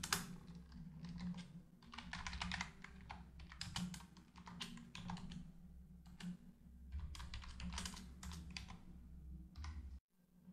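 Typing on a computer keyboard: quick runs of keystrokes in several bursts separated by short pauses, as code is entered.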